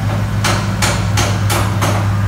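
Car engine idling steadily, with a run of five sharp knocks about three a second starting about half a second in.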